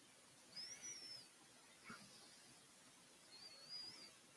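Near silence: room tone, with two faint high-pitched whistles, one arching up and down about half a second in and a wavering one near the end, and a soft click about two seconds in.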